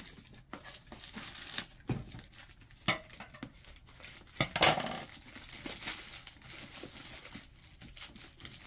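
Plastic poly mailer bag crinkling as it is cut open with scissors and pulled apart by hand: irregular rustling with a few sharp snaps, the loudest a little after halfway.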